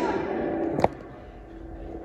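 The echo of a man's shout ringing on in a long brick-lined railway tunnel and dying away over the first second. A sharp click comes just under a second in, then a faint low rumble of the tunnel.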